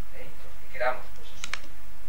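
Two sharp clicks about a second and a half in, from a clip-on lapel microphone being handled, preceded by a brief vocal sound. A steady low hum runs underneath.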